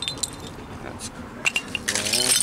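Glass bottles clinking together as they are handled among buried glass: about five sharp clinks, one near the end ringing briefly.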